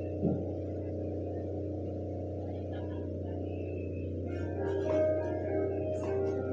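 A steady electrical hum from the church sound system, with a soft thump just after the start. From about four and a half seconds in, a few held musical notes begin: the opening of the accompaniment before the singers come in.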